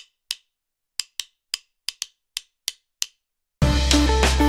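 A run of about ten short, dry, wood-block-like clicks at uneven spacing with silence between them, then background music comes in sharply about three and a half seconds in.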